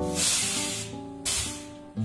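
Acoustic guitar background music, its notes fading away, overlaid by two bursts of hissing noise: one lasting about a second from the start, and a shorter one about a second and a quarter in.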